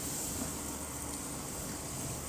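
Steady background hiss with a faint low hum in a cowshed, with no distinct event standing out.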